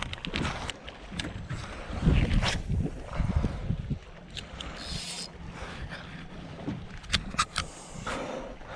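Handling noise as a spinning rod and reel is picked up off a dock and readied to cast: low thumps about two seconds in, a brief hiss around five seconds, and a few sharp clicks near the end.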